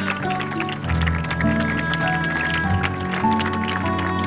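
Background music: held notes at several pitches, changing about once a second, over a quick steady pulse.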